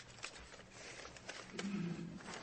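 Faint courtroom room sound during a change of arguing counsel: scattered small clicks and rustles, with a short low hum about a second and a half in.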